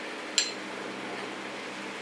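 A single light clink of a metal spoon against a glass bowl about half a second in, over a steady low background hiss.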